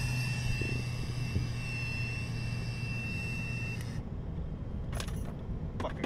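A sustained blow into a car's ignition interlock breathalyzer, with a low hum under it and the device giving one steady high tone for the length of the blow. It lasts about four seconds and cuts off suddenly. Car cabin and road noise continue underneath.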